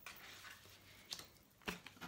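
Faint handling of large oracle cards on a wooden table, with light taps as cards are set down: one just after a second in and a sharper one near the end.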